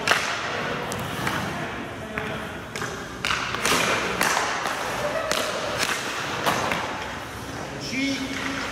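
Hockey sticks striking pucks and pucks knocking off pads and boards on an ice rink, heard as a string of about ten sharp knocks and thuds spread through, over the scrape of skate blades on the ice.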